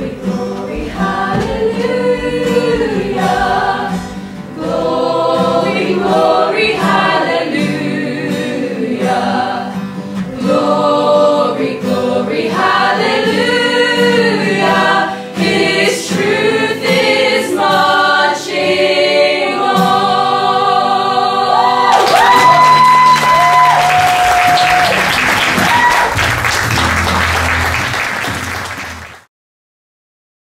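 A stage cast singing together in chorus over musical backing. About 22 seconds in, the song reaches its final held notes and audience applause rises over them, then fades out shortly before the end.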